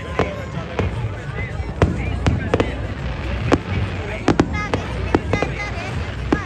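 Aerial fireworks going off overhead: a rapid, irregular series of sharp bangs and cracks, several close together about four to five and a half seconds in.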